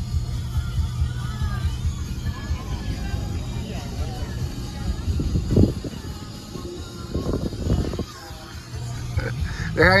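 Music playing on the car radio inside a slowly moving car, over a steady low hum of engine and road noise.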